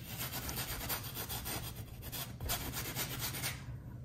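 A paintbrush scrubbing acrylic paint onto canvas: a steady scratchy rubbing that stops shortly before the end.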